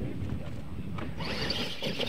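Radio-controlled monster trucks pulling away from the start line on a dirt track: a low rumble, then a hiss of motors and tyres on dirt that comes up just after a second in.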